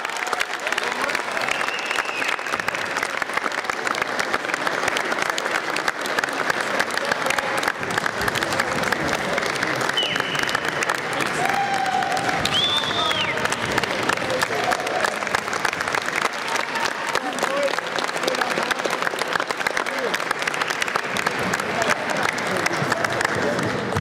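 Spectators applauding steadily, with a few brief calls from the crowd near the middle.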